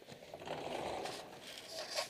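Sliding balcony door scraping along its track as it is pushed open, a rough rubbing noise lasting a little over a second.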